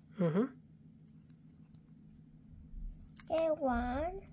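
A person's voice makes a short hum whose pitch rises, just after the start, and someone begins speaking near the end. In between, cardboard kit pieces click faintly as they are handled.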